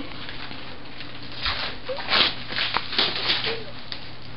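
Duct tape crinkling and ripping in several short bursts as it is torn off a person's body, starting about a second and a half in.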